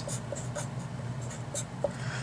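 Felt-tip Sharpie marker writing on paper, a few brief scratchy strokes as a word is written out.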